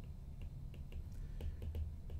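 Faint taps and clicks of a stylus writing on a tablet screen, coming more often in the second half, over a low steady hum.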